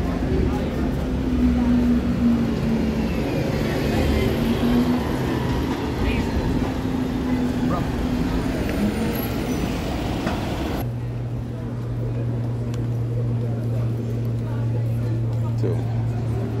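City street traffic with the steady drone of idling and passing vehicle engines, including double-decker buses. About eleven seconds in the sound changes abruptly to a steadier, lower hum.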